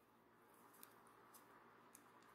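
Near silence: faint room tone with three soft ticks from a fine crochet hook working thin cotton thread.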